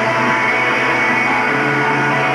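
Live rock band playing loud, guitar-driven music, with electric guitars to the fore. The low note underneath steps up in pitch about one and a half seconds in.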